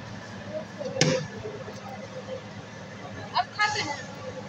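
Brief snatches of people's voices over steady background noise, with one sharp click about a second in.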